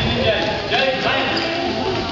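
Basketball bouncing on a hardwood gym floor during a youth game, with voices of players and spectators mixed in.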